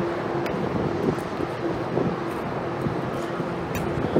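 Toyota Tundra engine idling with its catalytic converters cut out, a steady running hum, with wind on the microphone.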